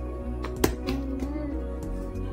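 Background music with sustained tones, and a sharp wooden click about two-thirds of a second in, the loudest sound: a wooden puzzle piece knocking against a wooden puzzle board, with a few fainter taps around it.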